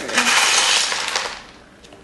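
Perlite and chunky potting mix being stirred by hand in a plastic basin: a gritty rattle and rustle of hard little pieces, fading out about a second and a half in.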